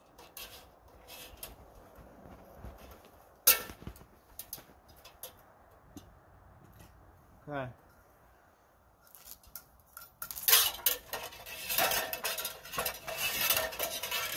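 Steel support wire for a sap line being handled and pulled at a tree, giving scattered light metallic clicks with one sharp click about three and a half seconds in. From about ten seconds on comes a louder, busy run of metal clinking and rattling as he climbs down the aluminium ladder with the wire.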